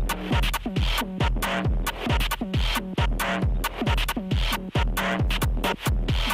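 Techno from a club DJ set: a steady four-on-the-floor kick drum at about two beats a second, each kick falling in pitch, with crisp hi-hat ticks and hissing noise between the beats.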